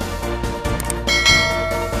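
Bell chime sound effect over steady background music: a single bright ring starts about a second in and fades away just before the end.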